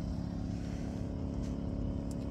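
A steady, low motor hum with a faint even hiss over it, holding constant throughout.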